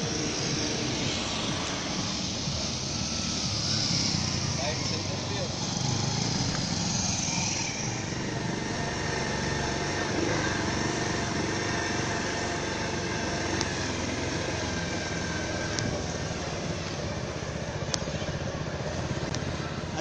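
Steady engine and wind noise of a light vehicle driving along a road, heard from on board.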